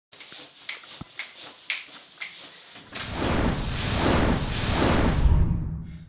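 A run of sharp clicks, a few a second, then about three seconds in a loud rushing whoosh with a deep rumble swells up and fades away just before the end, an intro sound effect leading into a channel logo.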